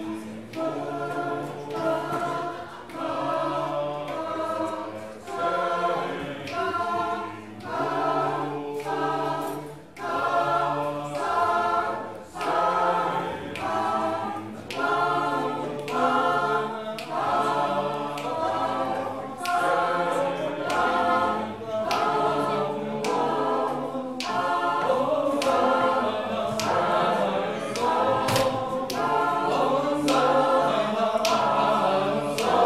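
Mixed choir of men's and women's voices singing a cappella in harmony, in short rhythmic phrases that recur about once a second.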